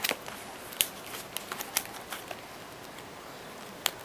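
Hands working a pouch free of its stiff plastic packaging: irregular sharp clicks and crinkles of plastic, with a sharp click near the end.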